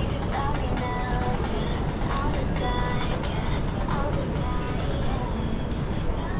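Busy city street ambience at night: a steady low rumble of traffic and footfall, with passers-by's voices and other pitched sounds coming and going, strongest near the middle.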